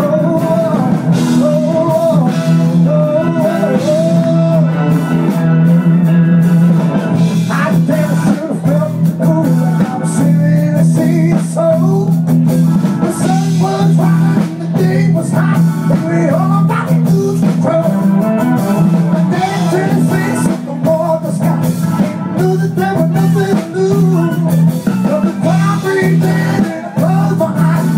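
Live band playing a blues-rock number: electric guitars and drums over a steady bass line, recorded from the side of the stage.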